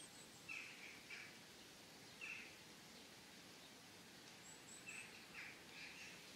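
Faint outdoor ambience with a few short, quiet bird chirps scattered through it, and a quick run of high, thin notes about three-quarters of the way in.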